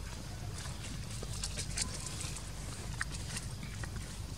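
Outdoor ambience: a steady low rumble with scattered small clicks and rustles, a few of them clustered about a second and a half in and again near three seconds.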